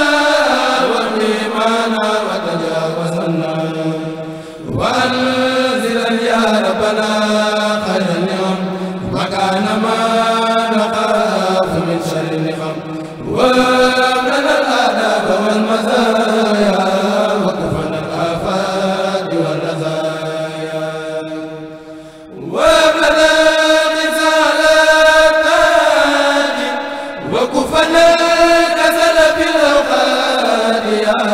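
A Mouride kourel, a group of young men, chanting a xassida together into microphones in long, drawn-out melodic phrases. The phrases are separated by brief breaths about four times.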